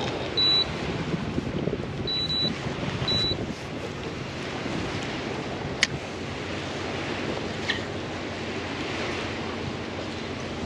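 A handheld trolling-motor remote beeping four short high beeps in the first few seconds: one, then a quick pair, then one more. Steady wind and water noise underneath, with a sharp click a little before six seconds in and a fainter one near eight seconds.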